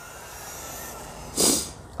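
Brushed electric motor of a 2WD RC stadium truck on a 3S LiPo running at speed, a faint steady whine under a low hiss as the truck pulls away. About one and a half seconds in, a short, loud breath-like hiss close to the microphone.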